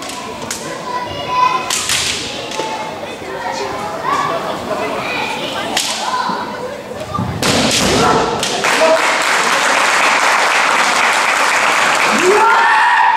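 A kendo bout: bamboo shinai clacking together in sharp strikes, the fighters' kiai shouts, and thuds on the wooden floor. From a little past halfway the noise turns louder and steadier, a sustained din of shouting.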